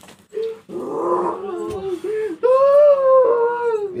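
A person making animal-like howling and moaning cries: a few short, broken sounds first, then about two and a half seconds in a louder, long drawn-out wail that rises and slowly falls in pitch.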